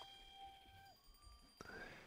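Near silence: room tone, with a faint held tone that dies away about a second in.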